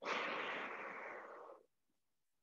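A long exhale through the mouth, starting suddenly and fading out over about a second and a half.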